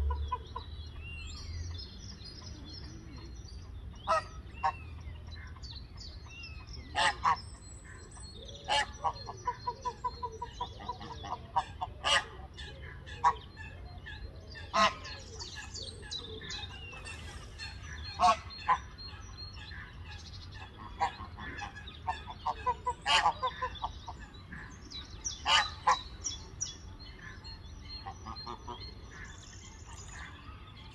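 Greylag geese honking: loud single honks come every second or two, some broken into quick runs of rapid repeated notes. Small birds chirp faintly in the background.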